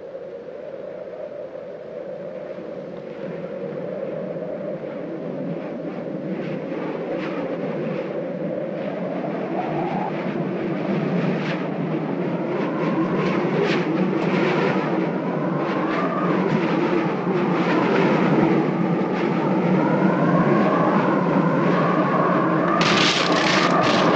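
Film soundtrack: a low, rumbling drone swelling steadily louder, with wavering, gliding tones above it growing stronger in the second half.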